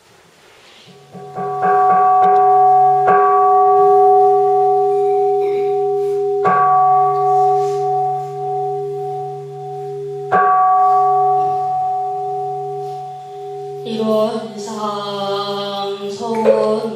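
Won Buddhist jwajong (a seated bowl bell) struck four times, each stroke ringing on long with several steady tones, over a low steady hum. About two seconds before the end, music begins.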